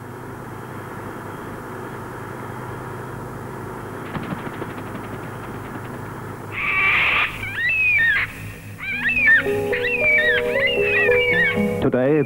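A bird's repeated calls that slide up and down in pitch, starting about six and a half seconds in, over a steady background hiss, with held music notes coming in about two seconds later.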